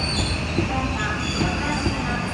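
Electric commuter train of the JR Osaka Loop Line running past along the platform: a steady rolling rumble, with a few sharp clacks from the wheels over rail joints and a thin wheel squeal.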